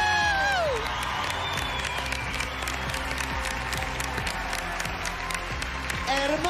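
Studio audience applauding and cheering over background music. The tail of a long shouted "¡Felicitaciones!" falls away in the first second.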